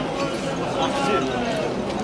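Men's voices chanting Iraqi ahazij (rhythmic folk praise chants) in a crowd, with dull thumps of hands striking in time.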